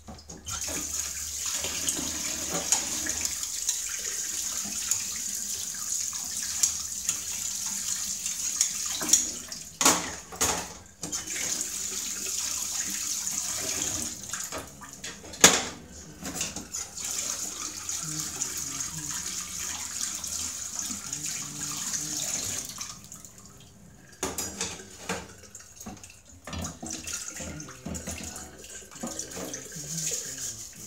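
Kitchen tap water running into a stainless steel sink while dishes are washed, with occasional clinks of crockery and one sharp clank near the middle. The running water stops about three-quarters of the way through, leaving scattered splashes and dish clatter.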